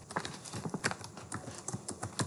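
Computer keyboard typing: a quick, uneven run of keystroke clicks as a line of SQL is typed.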